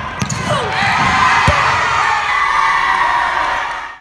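A basketball thudding on a hardwood gym floor, with spectators shouting and cheering loudly over it.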